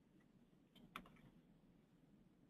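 Near silence with a faint low hum, broken about a second in by a brief soft cluster of clicks.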